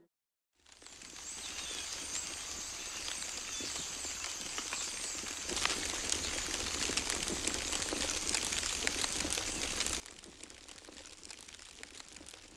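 Close-up nature ambience of fine crackling and rustling with a high hiss. It fades in after a short silence and turns quieter at about ten seconds.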